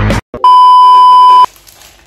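A single loud, steady, high-pitched beep tone lasting about a second, starting about half a second in and cutting off sharply: an edited-in censor bleep.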